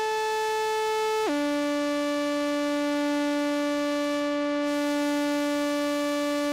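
Pioneer Toraiz AS-1 monophonic analog synthesizer playing a held pad tone: one steady note that drops to a lower note about a second in and sustains there.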